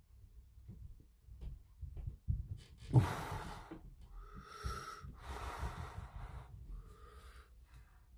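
A person breathing heavily close to the microphone: four long breaths in the second half, some with a slight whistle. A sharp thump about three seconds in is the loudest moment, and soft low knocks run underneath.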